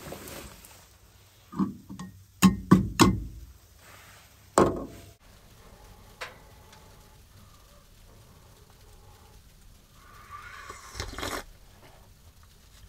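A handful of sharp knocks and thumps as camping gear is handled and shifted about in a truck bed. Then it goes quiet, with one short slurp from a mug of hot drink near the end.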